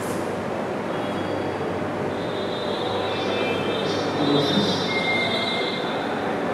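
Steady noise with several high-pitched squealing tones that set in about two seconds in and come and go.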